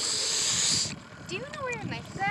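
A breathy hiss of air close to the microphone for about the first second, then a high voice calling out wordlessly in the second half.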